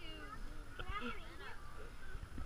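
Indistinct, high-pitched voices of young children talking and calling out, over faint background chatter.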